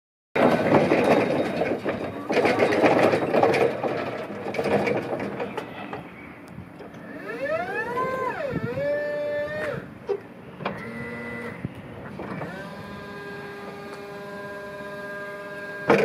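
Rocla electric reach truck working: after a few seconds of loud rough rolling noise, its electric motor whine rises and then falls in pitch as it moves. Shorter steady whines follow, then a steady electric whine through the last few seconds, ending in a sharp click.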